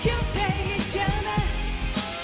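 A woman singing a Korean pop-rock ballad live, backed by a band with electric bass guitar.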